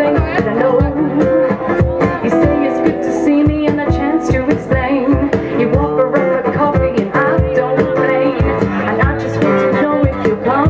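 Live band music: a woman singing over strummed guitar, with a steady low drum beat about twice a second.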